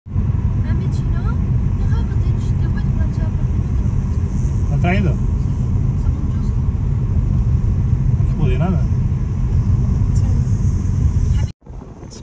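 Car driving along a road, heard from inside: a steady, loud low rumble of road and wind noise that cuts off abruptly near the end.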